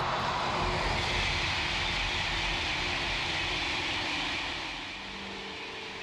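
Eurostar high-speed train passing at speed: a rushing noise that swells in the first second and holds, with a faint tone sliding down in pitch as it goes by, then fades away near the end.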